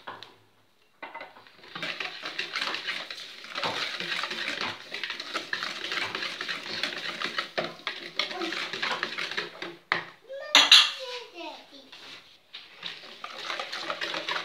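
Wire balloon whisk beating a thin egg-and-milk batter in a bowl: a rapid, continuous clatter of the wires against the bowl's side. It pauses briefly after about ten seconds and starts again near the end.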